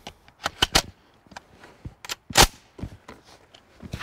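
Sharp metallic clicks and clacks of a Century Arms SAS-12 12-gauge box-fed shotgun being handled during a magazine change. The loudest clack comes about two and a half seconds in.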